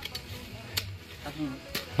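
A hoe blade chopping into the soil at the base of a cassava plant, loosening it around the roots so they can be pulled up: three short strikes, about a second apart.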